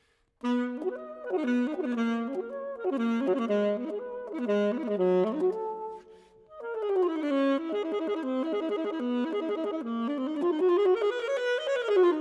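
Unaccompanied soprano saxophone playing rapid leaping arpeggio figures, starting about half a second in, breaking off briefly for a breath about six seconds in, then resuming with a line that climbs near the end.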